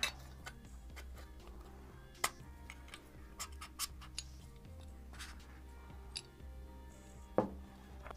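Quiet background music, with a few light clicks and knocks from a heat sink being slid onto a brushless RC motor and handled.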